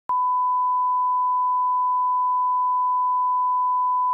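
Steady 1 kHz line-up test tone, a single pure beep held at an even level, the reference tone played with broadcast colour bars for setting audio levels. It starts abruptly with a brief click just after the start.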